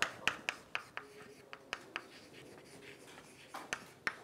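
Chalk writing on a blackboard: a quick run of sharp taps and short scrapes as the letters go down, a brief lull, then more taps near the end.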